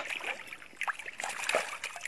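A few irregular small splashes and trickles of shallow water as small carp are let go into it.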